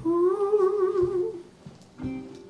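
A man humming one held note with a wavering vibrato, sliding up into it and fading after about a second and a half.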